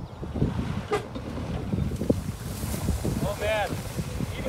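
A worn-out Jeep Grand Cherokee's engine running as it drives slowly through tall grass, a low rumble with wind buffeting the microphone and a few knocks about a second in. A brief voice near the end.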